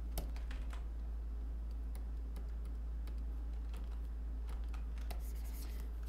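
Computer keyboard keys clicking now and then, irregular single keystrokes like hotkey presses, over a steady low hum.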